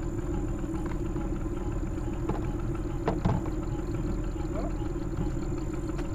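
Boat motor idling steadily, with a couple of brief knocks about three seconds in.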